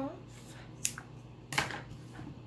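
Scissors cutting through a thick cotton rope: two sharp snips, the second and louder one about a second and a half in.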